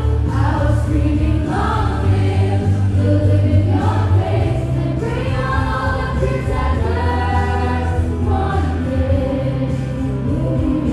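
A song playing, with a sung melody carried by many voices together over a heavy, steady bass line.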